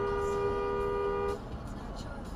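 Car horn held in one steady two-tone blast that cuts off just under a second and a half in, leaving road and tyre noise from a car at highway speed. It is a warning honk at a truck drifting into the car's lane.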